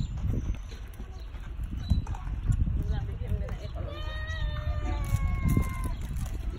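A long drawn-out vocal call starting a little under four seconds in and lasting about two seconds, its pitch falling slowly, over a steady low rumble.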